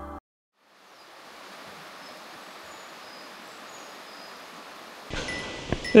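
Wind rustling through forest foliage, a soft steady wash that fades in after a moment of silence, with a few faint high chirps. A louder gust of wind on the microphone comes about five seconds in.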